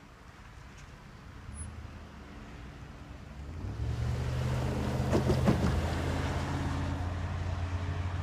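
A low engine rumble that swells in about halfway through and then holds steady, with a brief louder rush a little after that.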